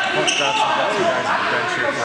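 Live basketball game sound in a gymnasium: voices from players and spectators echoing in the hall, with short high sneaker squeaks on the hardwood court.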